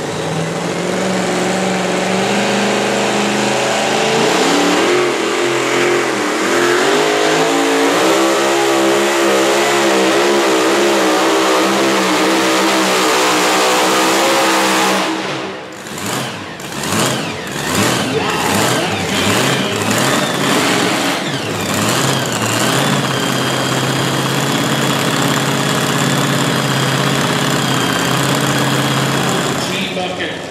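Supercharged engine of a super-modified two-wheel-drive pulling truck at full throttle under the sled's load, its pitch rising and then wavering for about fifteen seconds. It then lets off suddenly, blips the throttle several times, and settles to a steady idle with a faint high whine.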